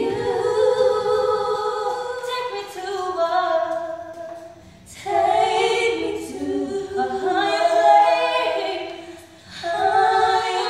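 Two young women singing a gospel song a cappella, with no accompaniment, in two long sustained phrases, each dropping off near its end.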